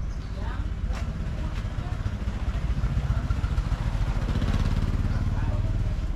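A motorcycle engine running close by in the alley, its low putter growing louder from about two seconds in, with voices faintly in the background.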